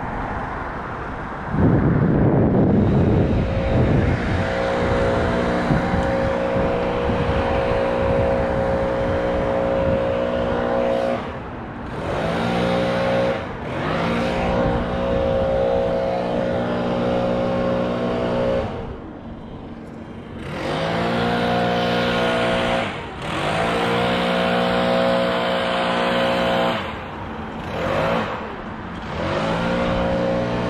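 A small gasoline engine, running at speed, drops in pitch and level and then climbs back up several times. It is louder and rougher for a couple of seconds near the start.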